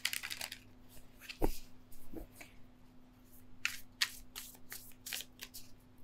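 A deck of tarot cards being shuffled and cut by hand, with soft card rustles and slaps. There is a firmer knock about a second and a half in and a quick run of riffling strokes in the second half.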